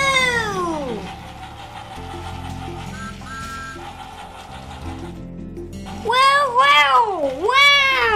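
A child's voice making long swooping vocal sounds that rise and fall in pitch without words, one at the start and several close together near the end, over a steady hum. A short two-note tone sounds about three seconds in.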